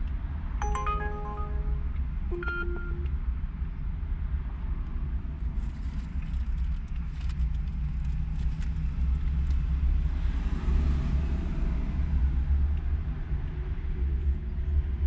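Car idling while stopped, a steady low engine rumble inside the cabin. About a second in, a short electronic chime of several stepped notes sounds, then one more brief tone.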